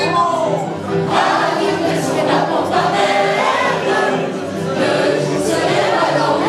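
A group of many voices singing a song together as a sing-along led by a conductor, the singing steady and unbroken.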